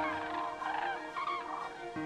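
A flock of common cranes (Grus grus) calling, many short rising-and-falling trumpeting calls overlapping, over steady held tones of background music.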